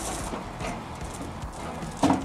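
Light, irregular knocks and rattles of a wheeled LED light-tower cart being pushed over concrete.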